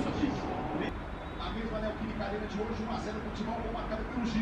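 Football match broadcast playing on a TV: a faint commentator's voice over a steady background of stadium crowd noise.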